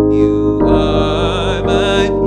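A man singing with vibrato over sustained electric keyboard chords; the chord changes about half a second in.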